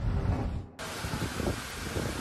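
Storm wind buffeting the microphone: a low rumble at first, then, after an abrupt cut a little under a second in, a fuller, steady hiss of wind.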